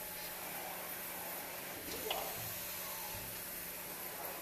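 Steady hiss and faint hum from a screen printing machine's pneumatic lift cylinder and air line as the print head moves, with a couple of soft low knocks past the middle.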